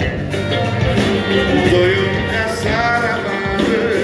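Live band music at a concert, with drums keeping a steady beat and a voice singing a wavering melody over the instruments.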